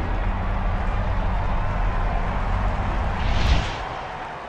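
Outro sound effect: a deep, steady rumble that follows a sudden impact, swells briefly about three and a half seconds in, and then starts to fade.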